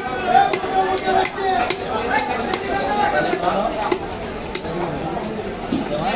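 A large cleaver chopping through the tail section of a big katla fish on a wooden log block: a run of short, sharp knocks over the chatter of people talking.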